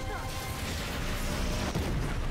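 A brief vocal cry at the start, then a sustained rushing blast like an explosion: a TV sound effect for a bright burst of energy.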